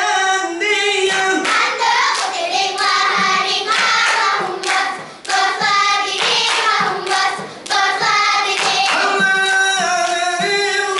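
A group of girls singing together in a chant-like melody while clapping and slapping their hands in quick rhythmic strikes, as in a seated clapping dance.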